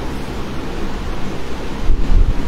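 Steady rushing background noise with a low rumble, with no clear pitch or rhythm.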